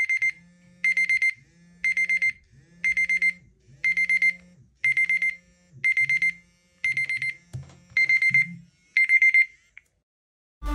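LG Android phone's countdown-timer alarm going off: short bursts of rapid high electronic beeps, about one burst a second, ten in all. It cuts off shortly before the end as the timer is stopped.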